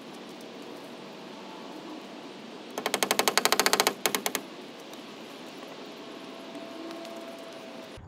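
Hammer tapping a nail into a wooden fence board: a quick run of sharp blows, about a dozen a second, starting about three seconds in and lasting about a second and a half.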